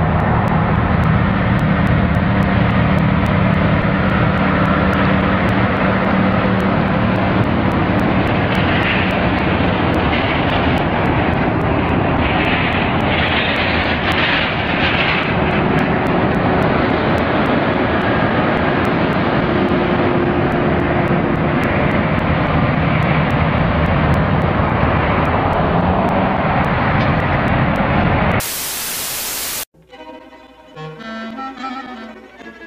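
Heavy-haul trucks pulling an oversize load on a multi-axle trailer: a steady engine drone under a loud, continuous rushing noise. A brief burst of static near the end.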